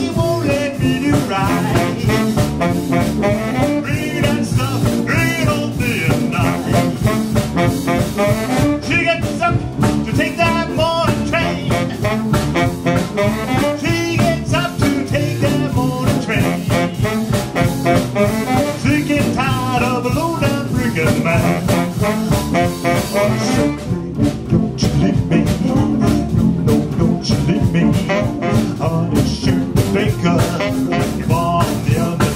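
Live jump-blues band playing a swing number: piano, upright string bass and drum kit, with a wavering lead melody over a steady beat.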